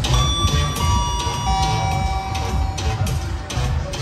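Loud fairground music over the ride's loudspeakers with a steady bass beat. Just after the start a three-note descending chime rings, its notes entering about two-thirds of a second apart and held overlapping for about two seconds.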